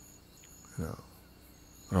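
A pause in a man's talk: a faint, thin, high-pitched steady tone that breaks off and returns in the background, with a short murmured vocal sound a little under a second in.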